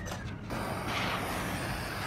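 An even hiss sets in abruptly about half a second in as the hot steel part sits smoking on the brass shell casings in the steel can, which is sizzling from the heat.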